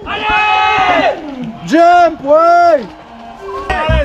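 Spectators shouting drawn-out calls of encouragement, three loud calls that rise and fall in pitch, with a brief lull near the end.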